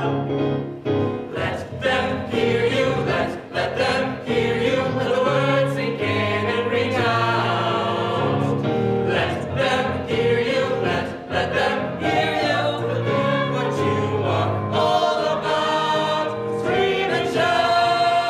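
Several voices singing together in a musical-theatre song, with keyboard accompaniment.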